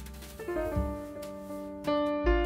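Background piano music: a slow melody of single notes and chords, a new chord struck near the end.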